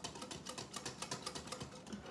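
Wire whisk beating thickening jello mix in a glass bowl: rapid, steady clicks of the wires against the glass.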